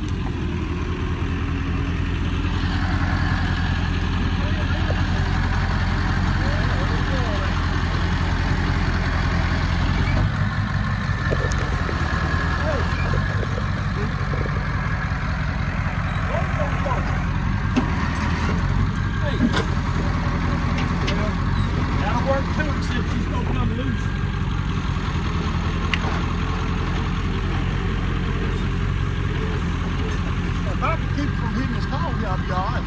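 Flatbed tow truck's engine running steadily while its tilted bed is worked, with a higher whine over it in the first third.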